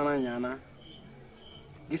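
Crickets chirping faintly in the background: short high chirps repeating a little under a second apart, heard once a voice stops about half a second in.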